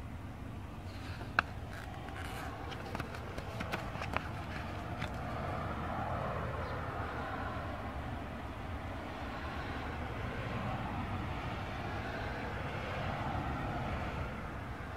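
Plastic DVD case being handled and turned over: one sharp click about a second in and a run of smaller clicks and taps over the next few seconds, over a steady outdoor rumble that swells in the second half.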